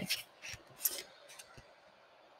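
Pages of a paperback book rustling and turning as it is leafed through: a few short, soft brushing strokes in the first second and a half, then stillness.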